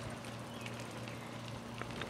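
Quiet outdoor background ambience with a faint steady low hum and a few tiny ticks.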